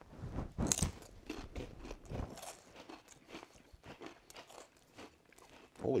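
Knäckebröd (Swedish crispbread) being bitten and chewed: a run of short, irregular crisp clicks, thickest in the first two seconds and thinning out after.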